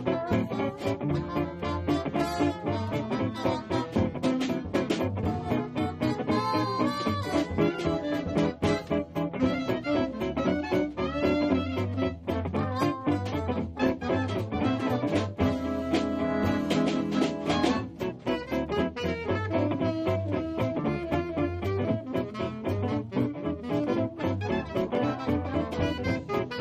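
Small swing band playing jazz live with a steady beat: trombone, trumpet, clarinet and tenor saxophone over plucked double bass, guitar and drums.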